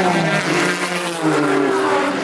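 IMSA sports car race cars running at speed down the front straight, their engine notes falling in pitch as they pull away. A louder engine note from another car comes in a little past halfway.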